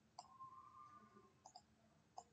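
Faint computer mouse clicks against near silence: one click shortly after the start, then a couple more about halfway through. A faint held tone follows the first click for about a second.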